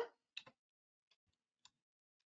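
Near silence broken by a few faint clicks from working a computer: two close together about half a second in, and one fainter near the end.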